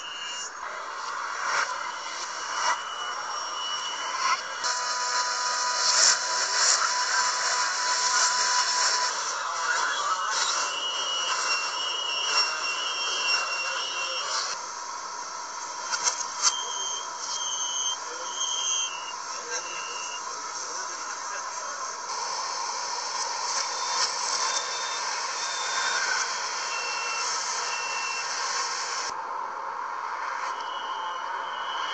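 Chinese metro train and platform-screen door warning beeps and buzzer, played in reverse. Runs of short high electronic beeps recur over a steady hiss of train and station noise, and a longer steady buzzer tone sounds for several seconds near the start.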